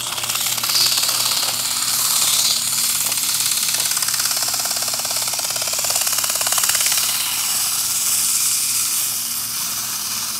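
180-grit sandpaper held against the spinning shaft of a 1955-56 Fedders fan motor, a steady rasping hiss with a fast flutter that starts abruptly, over the motor's low hum. The paper is polishing surface rust off the shaft as it turns.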